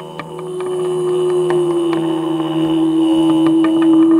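Live electronic jazz: a woman's voice holds one long wordless note over a low synth drone, growing louder, with scattered sharp electronic clicks.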